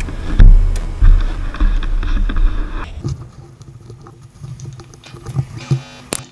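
Chairlift ride heard from a helmet-mounted camera. Heavy low rumbling buffets fill the first three seconds or so, then it turns quieter, with scattered knocks and rattles.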